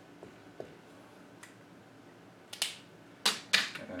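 Dry-erase marker writing on a melamine whiteboard: a few faint ticks at first, then three sharp, louder scratchy strokes in the last second and a half.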